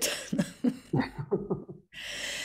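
A woman laughing in a run of short, breathy bursts that grow fainter over about a second and a half, then cut off abruptly.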